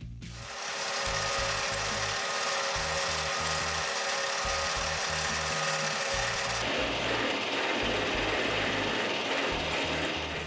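Metal lathe running while a reamer is fed into the end of a tube from the tailstock chuck: a steady machine hum with a few constant tones and a hiss. About two-thirds of the way in the sound changes, the highest hiss dropping away. Background music with a bass line plays throughout.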